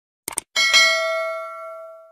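A quick double mouse click, then a single bright bell chime that rings out and fades over about a second and a half: a notification-bell sound effect.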